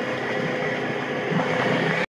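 Polaris RZR 900 XP side-by-side's engine running steadily under a constant rushing noise.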